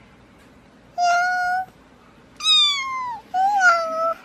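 Kitten meowing three times: a steady meow about a second in, a longer meow that falls in pitch, then a third that rises and falls near the end.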